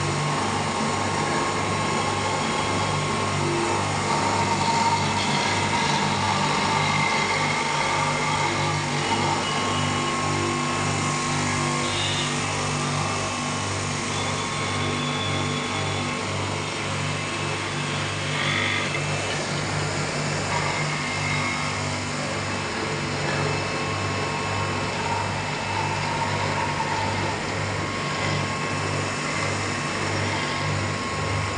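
Electric motor of a three-motor glass beveling machine running steadily, its diamond wheel grinding the edge of a glass piece held against it. A steady low hum under a grinding noise, with a couple of brief higher notes midway.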